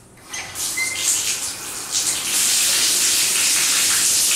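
Water starts running from a bathtub faucet into the tub, building up over about two seconds to a steady, full flow.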